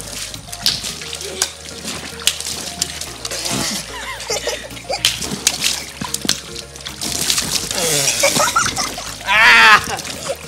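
Water balloons bursting one after another with sharp pops, and water splashing and sloshing as they are squeezed in a pool packed with balloons. A high-pitched squeal near the end is the loudest sound, over steady background music.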